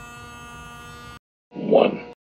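Small corded handheld vacuum cleaner running with a steady electric hum, cutting off abruptly a little over a second in. After a short silence, a brief loud voice is heard near the end.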